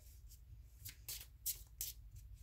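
A deck of oracle cards being handled and shuffled by hand, heard as faint, soft clicks and flicks of card on card, about six of them at uneven spacing.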